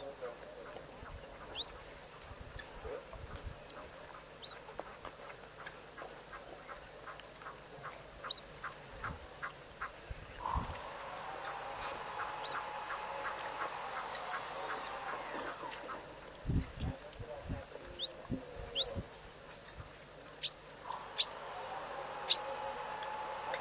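Birds calling: runs of quick, evenly spaced notes, short high chirps and rising whistles, and a longer held call from a little before halfway to about three quarters through. A few low thumps come in around three quarters of the way through.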